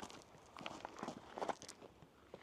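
Faint footsteps on a dirt path, a few soft, irregular steps.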